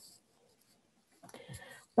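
Near silence for about a second, then a brief soft scratchy noise shortly before speech resumes.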